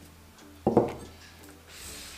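A glass beaker set down on a hard countertop: one sharp clunk about two-thirds of a second in, ringing out briefly.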